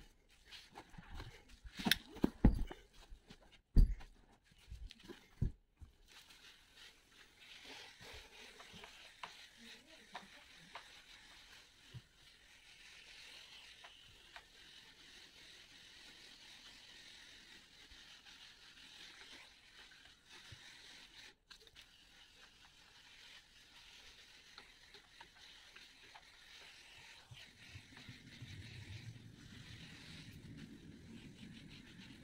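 Sharp knocks and clicks in the first few seconds, then the faint steady hiss of a hand pressure sprayer misting upholstery-cleaning agent onto sofa fabric. A low rumble rises near the end.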